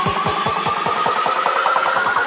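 Euphoric hardstyle dance music in a build-up: a slowly rising synth line over a drum roll that quickens, the heavy bass of the kicks thinning out about half a second in.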